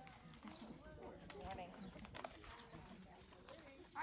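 A quiet pause: faint voices and a few light clicks or knocks over low background noise.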